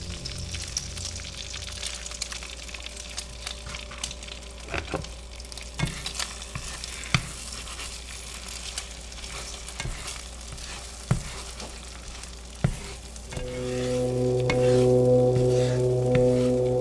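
An egg frying in a nonstick pan, sizzling steadily, with a few sharp clicks and scrapes of a spatula against the pan as the egg is broken up. A sustained low music chord comes in near the end.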